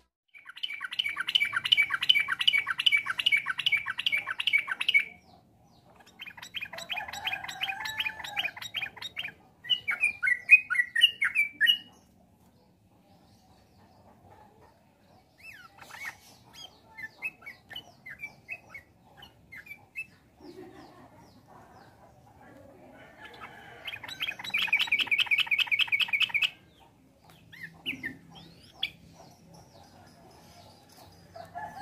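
Caged yellow-vented bulbuls (trucukan) calling in several bursts of fast, repeated high notes, the longest in the first five seconds and another loud run near the end, with quieter scattered calls between.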